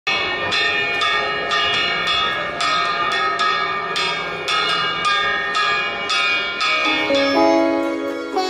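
Bell-metal plate gong (kasor) struck with a stick about twice a second, each stroke ringing on into the next. Near the end, sitar-like music fades in beneath it.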